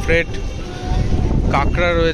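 A man's voice in short bursts at the start and near the end, over a steady low rumble of outdoor background noise.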